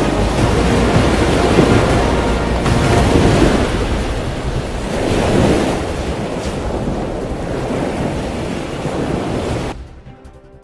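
Loud rushing noise of churning water and wind, swelling and easing, that cuts off abruptly near the end.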